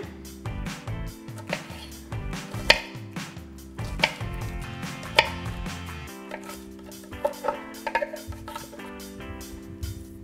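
Kitchen knife chopping peeled garlic cloves on a wooden cutting board: an irregular run of sharp taps as the blade strikes the board, a few louder chops among them. Background music plays underneath.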